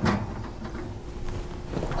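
A metal baking pan set onto the wire rack of an open oven: a clatter of metal on metal right at the start, then softer knocks and scrapes as it is pushed into place, over a faint steady hum.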